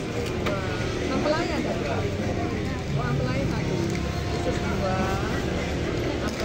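Voices talking at intervals over a steady low background noise.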